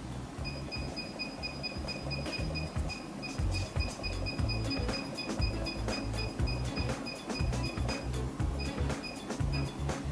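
Digital controller of a mug heat press beeping: a long, rapid run of short, high, evenly spaced beeps as its button is held to step the temperature setting, breaking off about eight seconds in, then a few more beeps near the end. Background music with a low beat plays underneath.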